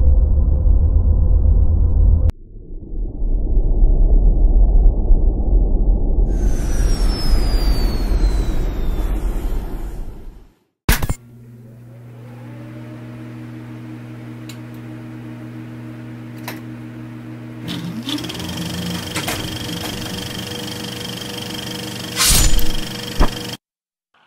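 Deep rumbling spaceship-engine sound effect with a falling whine partway through, cutting off at about ten seconds. Then a steadier low hum with a few held tones and scattered clicks, a short loud burst near the end, and the sound cuts out just before the end.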